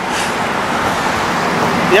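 Road traffic on a city street: a steady rush of passing car noise that swells slightly in the middle.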